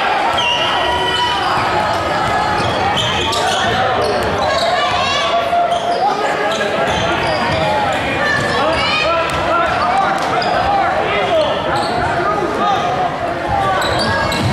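Basketball game in a gym: a crowd of voices talking and shouting, with a basketball bouncing on the hardwood court and a few brief high sneaker squeaks.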